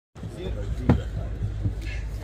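A sharp thump about a second in, with a smaller knock later, over a steady low hum.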